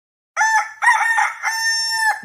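A rooster crowing cock-a-doodle-doo, starting about a third of a second in: two short notes and then one long held note.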